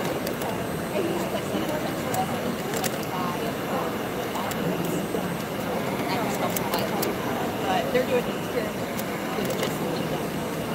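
Handheld electric heat gun running steadily, its fan blowing hot air, over background crowd chatter.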